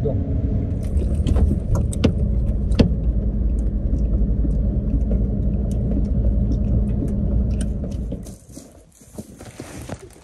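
Cabin rumble of a van driving over a rough dirt track, with a few sharp knocks and rattles from bumps in the first few seconds. The rumble falls away about eight seconds in, leaving it much quieter.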